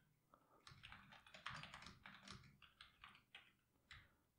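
Faint typing on a computer keyboard: a quick, irregular run of key clicks that starts under a second in and stops shortly before the end.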